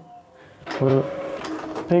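Epson EcoTank L3250 inkjet printer running, its motors whirring with a steady mid-pitched tone, starting a little under a second in after a brief quiet moment.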